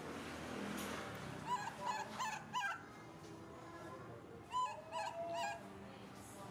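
An animal's short, high, squeaky whimpering calls, each rising and falling in pitch: four in quick succession about a second and a half in, then three more near the end.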